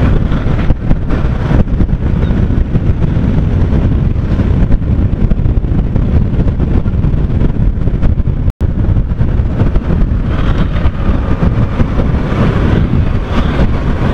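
Heavy wind rush on the microphone of a camera mounted on a moving Yamaha R15 V3 motorcycle: a dense, buffeting low rumble with no clear engine note standing out above it. The sound cuts out for an instant about eight and a half seconds in.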